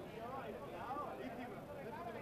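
Faint pitch-side ambience of a football match: distant players' voices calling out, with no single loud event.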